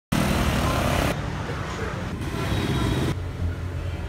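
City street traffic with motor scooters running by and voices mixed in, made of short clips that change abruptly about once a second.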